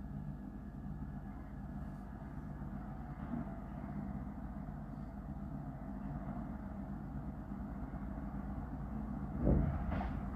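Recovery truck's engine idling steadily, a low even rumble, with a brief louder swell about nine and a half seconds in.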